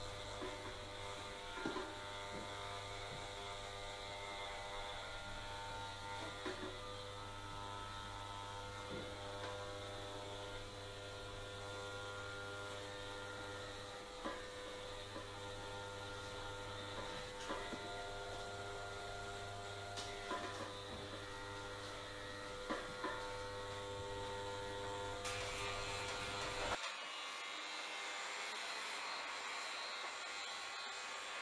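Corded electric hair clippers buzzing steadily as they trim short hair, with occasional light clicks. Near the end the buzz gives way to a steady hiss.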